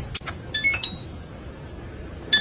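Front-loading washing machine's control panel beeping: a click near the start, then about half a second in a quick run of short electronic beeps stepping up in pitch, like a power-on tune.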